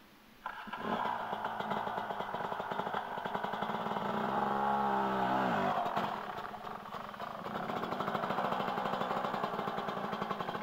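Dirt bike engine starting suddenly about half a second in, then running. Its pitch rises and falls once in the middle, and the engine carries on running as the bike pulls away.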